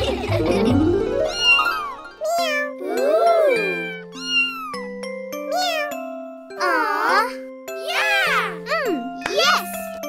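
Cartoon kittens meowing, a string of short rising-and-falling mews about once a second, over light children's background music. A rising sound effect fills the first second.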